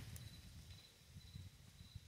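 Near silence: faint outdoor background with a low rumble.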